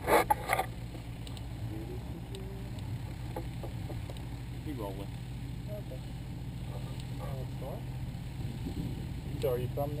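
Steady low drone of a light aircraft's engine, with faint voices now and then.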